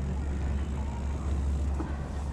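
Low steady rumble of a mountain bike rolling slowly over brick pavers, picked up through a chest-mounted action camera.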